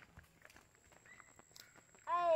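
Near silence, with faint, scattered soft ticks of bare feet stepping on a dirt path.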